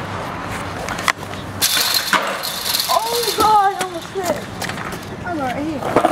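Short bits of people's voices over a steady rushing noise, with a sharp knock about a second in.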